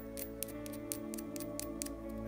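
Soft background music with held tones, under a string of faint, irregular light clicks from small plastic kit parts and a grease tube being handled.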